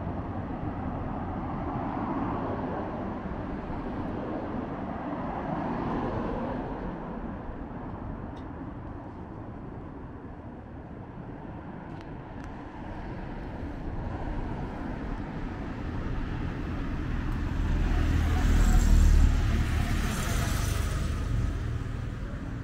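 Road traffic on a busy city road, cars passing one after another. Near the end one vehicle passes close and loud, with a low rumble and tyre hiss, before easing off.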